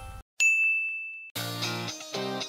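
A single bright ding sound effect, a logo sting, about half a second in, ringing on one high note and fading over nearly a second. Plucked-guitar music starts near the end.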